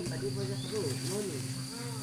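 Western hoolock gibbon calling: about four short hoots that rise and fall in pitch, over a steady high insect drone and a low held music tone.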